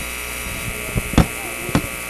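Steady electrical mains hum and buzz on an open commentary microphone, with a few short clicks about a second in and near the end.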